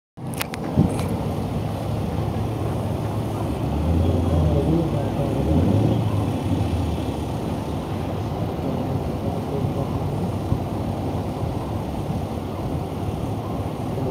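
Truck engines running at idle, with people talking in the background. An engine grows louder for a few seconds from about four seconds in. A couple of sharp clicks come in the first second.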